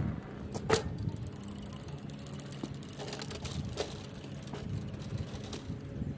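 An unpowered walk-behind lawn mower being wheeled over a concrete driveway: a sharp knock about a second in, then light clicking and rattling from the wheels and frame, over a steady low hum.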